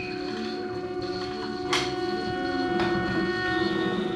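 Free-improvisation quintet (drums, double bass, soprano saxophone, synthesizer, vibraphone) playing a dense drone of held, overlapping tones. A sharp struck note a little under two seconds in rings on, with a lighter strike about a second later.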